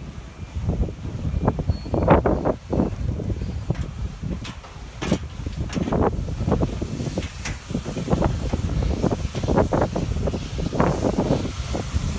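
Footsteps climbing a ship's gangway: a series of irregular knocks, with wind buffeting the microphone.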